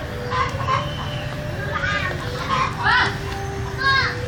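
Chickens clucking in short calls several times, over a steady low rumble.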